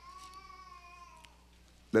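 A faint, drawn-out high-pitched cry that rises slightly in pitch and fades out a little over a second in.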